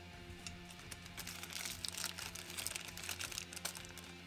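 Quiet background music, with light clicking and crinkling from a small condenser microphone being handled in a clear plastic tube, the handling noise building from about a second in.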